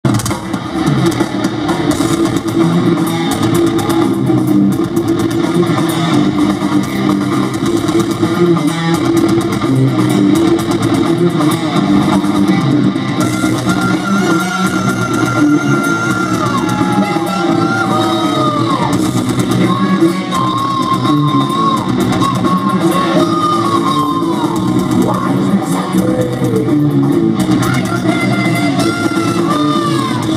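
Heavy metal band playing live through a PA, with distorted electric guitars over bass and drums, recorded from within the crowd. A higher melodic line with pitch bends comes in about halfway through.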